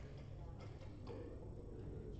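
Quiet room tone with a steady low hum and a few faint ticks.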